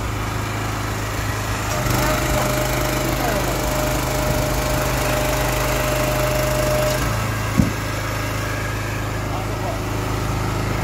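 Honda GX390 petrol engine running the Krpan CV18 log splitter. From about two seconds in, for some five seconds, its note rises and a steady whine joins it as the hydraulic ram works under load. About a second after that it drops back, and there is a single sharp crack of wood.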